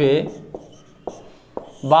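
Marker pen writing on a whiteboard: faint scratching strokes with a few sharp taps, following a short spoken word.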